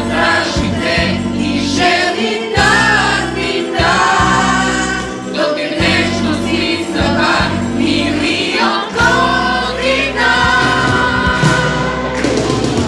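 Music: a group of voices singing together in a choir-like blend over sustained instrumental accompaniment with low bass notes.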